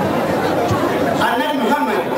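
A man's voice speaking into a microphone, amid crowd chatter.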